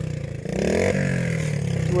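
Motorcycle engine running, revved up once and easing back down about a second in.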